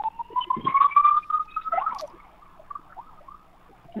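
Emergency-vehicle siren wailing, its pitch rising steadily over the first two seconds and then fading away.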